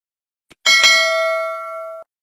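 A bell-like ding sound effect, of the kind used for a notification bell: a faint click, then a bright chime struck twice in quick succession about two-thirds of a second in, ringing and slowly fading before it cuts off abruptly.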